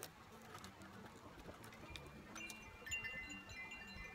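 Quiet room tone with a few faint, high chime tones that begin about two and a half seconds in and ring on steadily.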